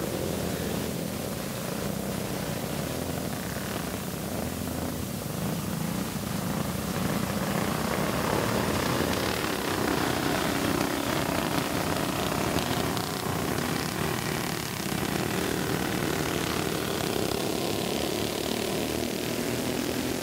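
Several flathead-engined racing go-karts running together at pace speed before the green flag: a steady, droning engine note that swells a little as the pack passes.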